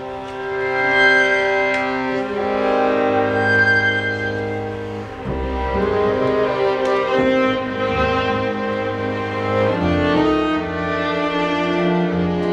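A solo violin plays a melody in long held notes over sustained low strings from a chamber string ensemble, with cello and bass underneath. This is the opening of a contemporary fantasia for violin and viola.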